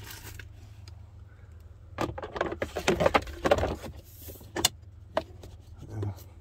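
Plastic glove box of a 2016 Honda Pilot being handled and snapped back into place: a dense run of knocks, scrapes and clicks from about two to four seconds in, then two single sharp clicks as its clips go on. A steady low hum runs underneath.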